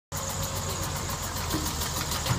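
Backhoe loader's diesel engine running steadily.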